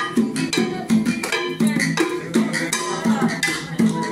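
Live Latin-style hand-percussion jam: hand drums beaten in a steady beat with sharp wooden clicks, over a strummed guitar.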